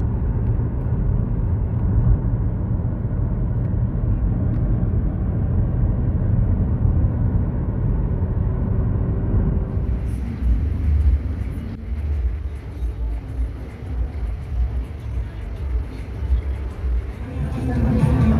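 Low, steady road and engine rumble heard from inside a moving car. About ten seconds in it cuts to a quieter, hissier background whose level rises and falls.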